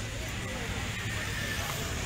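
Roadside street sound: a motor scooter's engine running as it rides past, with indistinct talk from a crowd of onlookers.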